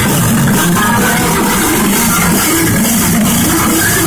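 Heavy metal band playing live at full volume: distorted electric guitars riffing over a drum kit, steady and loud throughout.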